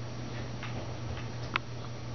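Baby chick giving a few faint, short peeps as it falls asleep, the loudest about one and a half seconds in.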